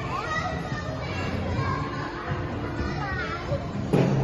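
Many children's voices shouting and chattering at once, the steady din of a busy indoor play hall, with a louder burst of voices near the end.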